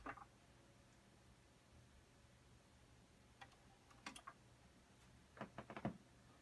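Near silence with a faint low hum, broken by a few faint mechanical clicks about three and a half and four seconds in, then a quick cluster of small clicks near the end: the Pioneer PL-255 turntable's tonearm and cueing controls being handled.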